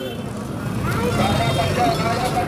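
Busy market-street ambience: steady traffic noise from motorbikes and other vehicles under crowd chatter. About a second in, a voice comes in faintly over it.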